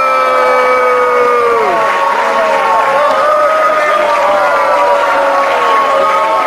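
Audience reacting at the end of a speech: clapping, with several people shouting long drawn-out calls that slide down in pitch about two seconds in, then more overlapping shouts.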